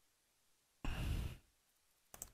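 A person's single audible exhaling sigh, lasting about half a second, near the middle.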